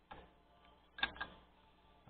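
Faint clicks from hand-adjusting a digital microscope's zoom: one small click just at the start, then two quick clicks about a second in, over a faint steady hum.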